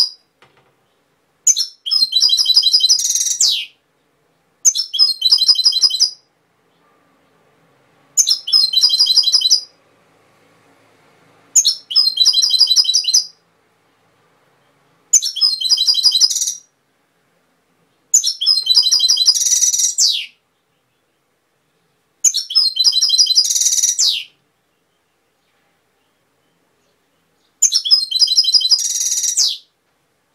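European goldfinch singing in short phrases of rapid twittering notes. There are about eight phrases, each one to two seconds long, with brief pauses between them, and a few end in a denser, brighter run.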